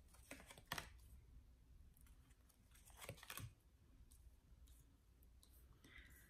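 Tarot cards drawn from the deck and laid down on a tabletop: a few faint papery clicks and slides, a pair early on, another pair about three seconds in, and softer ones near the end.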